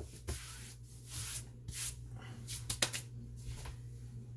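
Kitchen handling noises: rustling and scraping bursts, then a few sharp clicks about three seconds in, over a steady low hum.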